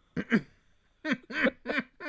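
Laughter: after a couple of short voiced sounds near the start, a run of short pitched bursts of laughing begins about a second in, about three a second.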